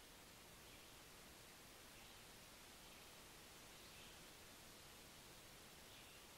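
Near silence: room tone, with a few faint, soft touches of a paintbrush dabbing watercolour paint onto paper.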